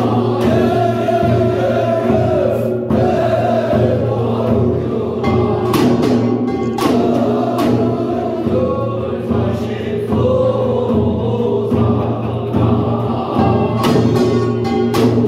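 Korean binari, a sung ritual blessing chant for a gosa, with a voice carrying a wavering melodic line over irregular strokes of buk barrel drums and a small brass gong.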